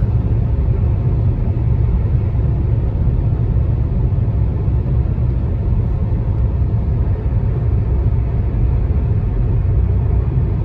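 Road noise inside a moving car's cabin at highway speed: a steady low rumble.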